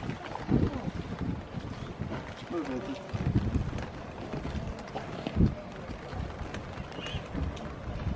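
Wind buffeting the microphone as an uneven low rumble, with brief murmurs of voices and a single dull thump about five seconds in.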